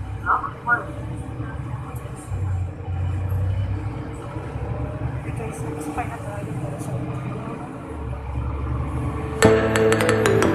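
Steady low rumble of a moving vehicle, with faint voices in the first second. Near the end, music with chiming, bell-like notes starts suddenly.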